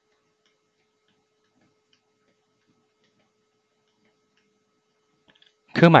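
Near silence: faint room tone with a low steady hum and a few faint ticks, until speech starts right at the end.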